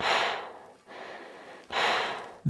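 Heavy, laboured breathing through a high-altitude oxygen mask: a loud breath, a quieter one, then another loud breath near the end.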